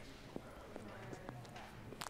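Faint footsteps on a hard stage floor, a handful of light knocks at an even walking pace, with low murmured voices underneath.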